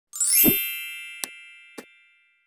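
Channel intro logo sound effect: a quick rising sweep into a single chime struck with a low thump, its bell-like ring fading slowly. Two short clicks follow as the ring dies away.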